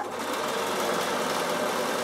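Bernina sewing machine stitching at a steady, even speed through the fabric binding of a bag.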